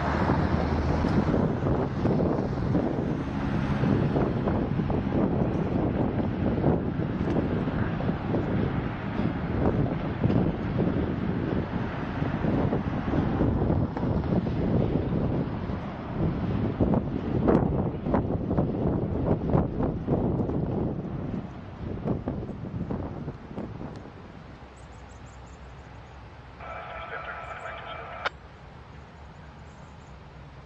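Freight train of autorack cars rolling across a steel bridge, a dense rumble of wheels on rail mixed with wind on the microphone, fading away after about 20 seconds. Near the end a short pitched tone of several notes sounds for about a second and a half and ends in a sharp click.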